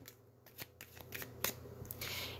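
A deck of tarot cards being shuffled by hand: scattered soft card clicks and flicks, starting about half a second in.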